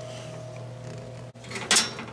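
Steady low electrical hum in the workshop, which cuts off abruptly part-way through. A little later comes a short scraping handling noise as the glass laser tube is brought into the cutter's tube bay.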